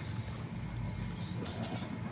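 Handling noise as a hand parts the leaves and dry grass of a small bird's nest, with a few faint ticks over a low, steady rumble.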